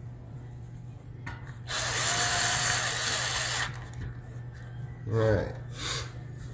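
Cordless electric screwdriver running for about two seconds, driving a screw into the 2.5-inch hard drive's mounting caddy. A short voice sound follows about five seconds in.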